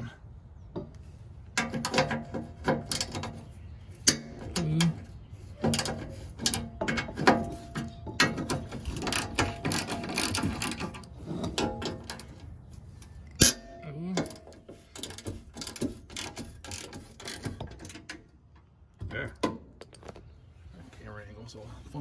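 Socket ratchet clicking in quick runs as a rusty, penetrant-soaked bumper-bracket bolt is turned loose, with metal-on-metal clinks from the tool and bracket. A single sharp knock stands out a little past halfway, and the clicking thins out after it.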